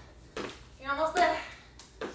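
Sneakers landing on a wooden floor during a fast side-to-side cardio exercise, a sharp thump about every second. In the middle comes a short voiced sound from the woman, with no clear words.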